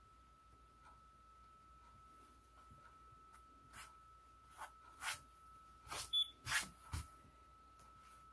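A paper cutout being handled and pressed down onto a canvas by hand: a run of about seven short, soft rustles and taps in the second half.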